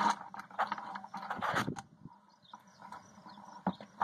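A trapped mouse scrabbling and scratching on the plastic of a bucket: irregular scratchy taps, busiest in the first two seconds, then sparse and faint.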